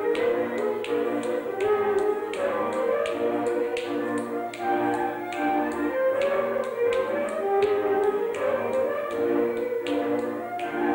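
Mezőség (Transylvanian) folk dance tune playing continuously, crossed by sharp slaps and steps from a man's solo dance footwork, falling in time with the music about two to three times a second.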